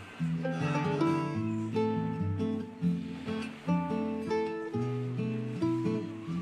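Acoustic guitars played live as an instrumental duet: a plucked melody line over chords, with notes changing several times a second.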